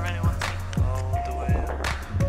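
Background music: an electronic beat with a steady deep bass, a kick drum about twice a second, hissy hi-hats and a few held synth notes.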